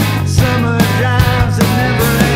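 Rock band recording playing: drums, bass and guitar, with a steady beat of drum hits about two and a half a second.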